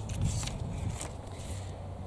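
Gusty wind buffeting the microphone as a steady low rumble, with a few light clicks and rustles as a bamboo cane is picked up from a pile on the soil.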